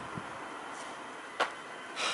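A single sharp click about one and a half seconds in, as the barbecue's rotisserie motor is switched on, over faint steady background noise.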